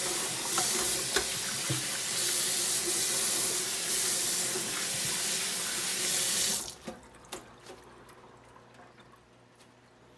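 Kitchen faucet running into a stainless steel sink, the stream splashing on a plant pot and hand as it is rinsed. The water stops suddenly about two-thirds of the way through as the tap is shut off, followed by a couple of light knocks.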